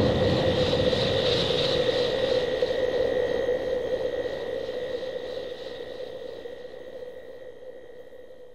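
The end of a dance-pop track: a sustained, swirling synthesizer rush with a few held tones and no beat, fading out steadily.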